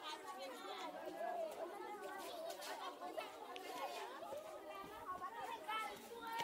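Many voices chattering at once: a crowd of schoolchildren talking over one another, with no single voice standing out.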